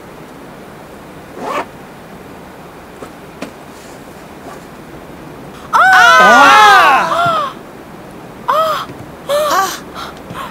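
Several people crying out together in surprise, a loud overlapping outburst lasting about a second and a half starting some six seconds in, followed by a few short exclamations.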